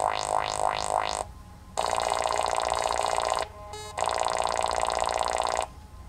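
littleBits Synth Kit modules playing electronic synthesizer sounds: a quick run of rising sweeps, about four a second, then two held buzzy tones of a second and a half or more each, broken by short pauses.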